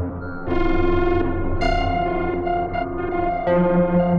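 Synthesizers playing a slow, dark ambient drone: sustained buzzy tones, with a new held note coming in three times, about half a second in, near 1.6 seconds and about 3.5 seconds in. A low hum under them drops away just before the first new note.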